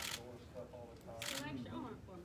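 Quiet voices talking in a small room, with two short hissing bursts: one at the very start and one just past a second in.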